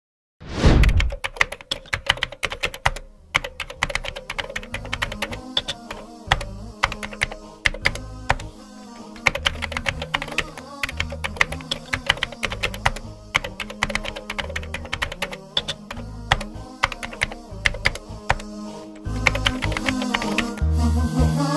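Keyboard typing sound effect: rapid, irregular key clicks running on throughout, over background music with a pulsing bass. It begins suddenly with a low thud about half a second in.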